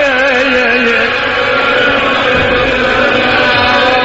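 A man chanting a mourning lament (noha), drawing out one long melismatic note with no clear words; the pitch wavers up and down in the first second, then settles.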